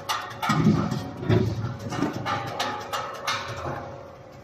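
Potatoes thudding and clattering irregularly inside a stainless-steel French fry cutting machine as they are fed in and sliced into strips, over the steady hum of the running machine.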